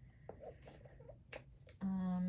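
Faint, scattered handling clicks and light taps, one sharper click a little past halfway, then a short flat hum from a woman's voice near the end.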